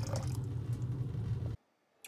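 Vinegar pouring in a thin stream from a plastic bottle into a stainless steel pot, a light liquid splashing over a steady low hum. It cuts off suddenly near the end.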